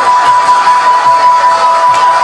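Live ringside music for a Lethwei bout: a single high note held steadily throughout, with short swooping pitch bends beneath it, over the crowd's noise.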